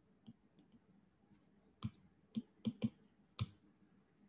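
Stylus tapping on a tablet's glass screen: five short, sharp clicks between about two and three and a half seconds in, with a few fainter ticks before them.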